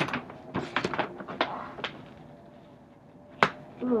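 A large folded paper poster being unfolded by hand, with a string of short rustles and crinkles in the first two seconds and one sharp snap of the paper near the end.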